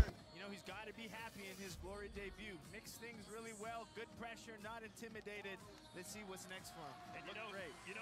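Several voices talking over one another, with faint music underneath and a sharp click right at the start.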